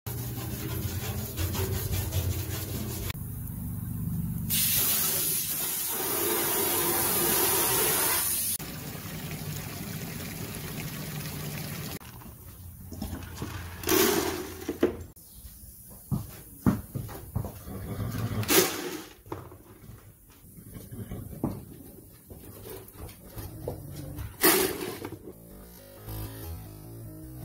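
Water running and splashing in a trough as it is scrubbed with a brush. About halfway through, this gives way to a cordless drill driving screws into a wooden rail in several short bursts.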